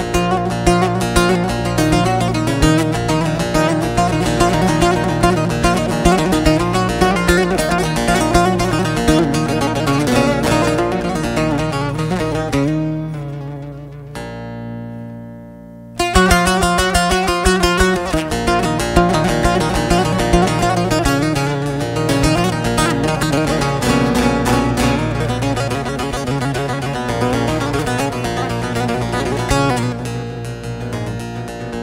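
Instrumental Turkish folk music led by fast plucked bağlama. About halfway through it thins to one held, fading note, then the full playing comes back in suddenly.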